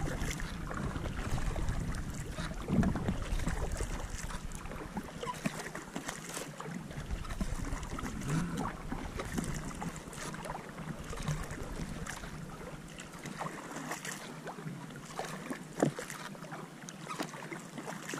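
Kayak paddle blades dipping and splashing through calm water in a steady run of strokes, with water running off the blades. Wind rumbles on the microphone in the first few seconds and then drops away.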